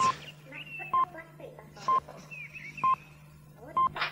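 A short, steady electronic beep about once a second, five in all, with warbling, glitchy synthetic voice-like glides between the beeps over a steady low hum.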